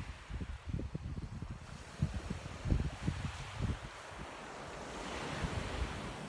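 Wind buffeting a phone microphone in irregular low gusts over the steady wash of sea surf.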